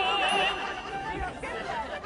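A music cue with a wavering, operatic-style vocal line ends about half a second in, followed by people talking indistinctly.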